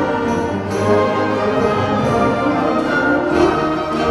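High school concert band playing, with woodwinds and brass over string basses, the full ensemble holding chords.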